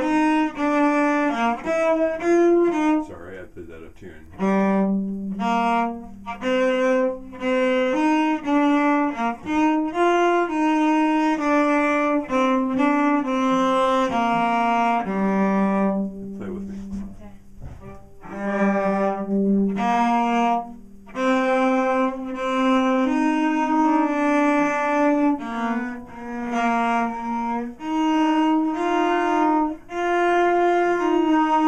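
Solo cello played with the bow: a passage of separate, detached notes, mostly in the cello's middle register, with two short breaks, one about three to four seconds in and another about sixteen to eighteen seconds in.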